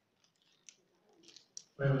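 A quiet hall with a few faint, scattered clicks, then a man's voice comes in loud through the microphone and hall loudspeakers near the end, ringing in the room.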